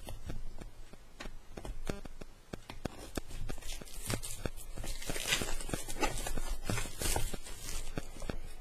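Cellophane wrap crinkling and tearing as it is peeled off a small cardboard box, with many small clicks and taps from handling the box. The rustling is densest in the second half.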